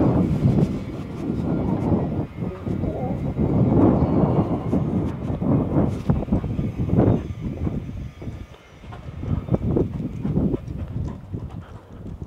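Wind buffeting an unshielded microphone in irregular gusts, a loud low rumble that swells and drops and eases off near the end.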